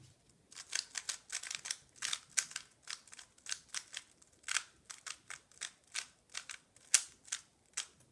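A MoYu Weilong GTS3 M 3x3 speedcube being turned to scramble it: an irregular run of quick, sharp plastic clicks as the layers snap round, a few per second.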